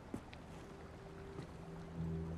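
Faint ambience of water around a boat at night, with a soft click shortly after the start. A low sustained music drone fades in about half a second in and swells near the end.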